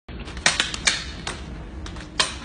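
Eskrima sticks striking each other in a fast drill: about five sharp clacks in quick, uneven succession in the first second and a bit, then a softer clack near the end.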